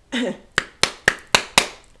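A short vocal exclamation with a falling pitch, then five sharp hand claps at about four a second.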